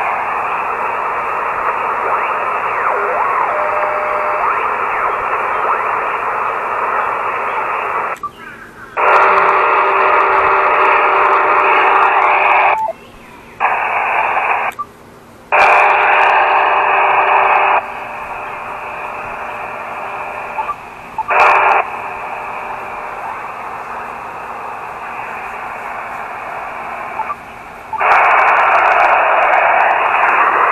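Elecraft KX2 shortwave transceiver's receiver audio: band-noise hiss and static heard through its narrow sideband filter as it is tuned across the bands, with a few faint steady tones. The sound drops out briefly several times and changes level as the tuning moves.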